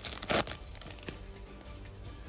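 Foil booster-pack wrapper crinkling as it is torn open and pulled off the cards, loudest in two bursts in the first half second, then quieter rustling and small clicks as the cards are handled.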